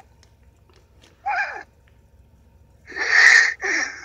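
A man's stifled laughter held back behind his hand: a short breathy sound a little over a second in, then two loud wheezy bursts of laughter near the end.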